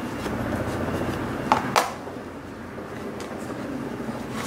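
Steady room hum with soft handling of a cotton shirt collar as its corner is pushed out, and two light clicks about one and a half seconds in, most likely the small scissors being set down on the cutting mat.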